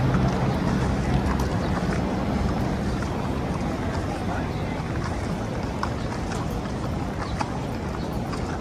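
City street traffic noise, with a motor vehicle's low engine hum fading away over the first three seconds, and light footsteps on concrete pavement.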